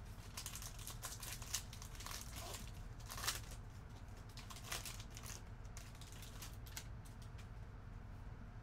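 Foil wrapper of a trading card pack crinkling and tearing as it is opened by hand: a faint run of crackles and clicks with a few louder snaps.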